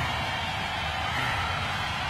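Steady, even background soundtrack din with no distinct hits or calls, holding at one level throughout the pause.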